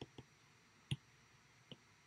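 Faint clicks of a stylus tapping on a tablet's glass screen while handwriting: four short taps, the loudest about a second in.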